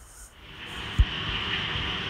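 Steady rushing of water running from the well pipe into the tank, with a low rumble under it and a single sharp thump about a second in.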